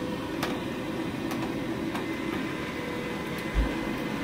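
Baxi Duo-tec combi boiler running just after being switched on: a steady hum from its fan and pump with a faint steady tone. A few light clicks of a screwdriver on the panel screw, and a short low thump near the end.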